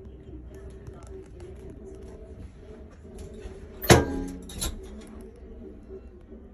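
Two sharp knocks about 0.7 s apart, the first loud with a brief ringing after it, the second softer, over a steady low hum.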